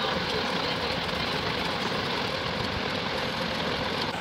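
Steady background rumble and hiss, unchanging throughout.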